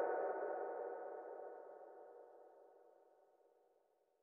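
A gong-like ringing tone dying away smoothly, gone by about three seconds in.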